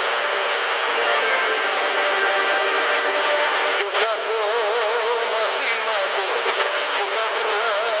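Medium-wave AM broadcast playing music with a wavering melody line, heard through a Tecsun portable radio's speaker tuned to 1440 kHz. The sound is thin and narrow, with a brief crackle about halfway through.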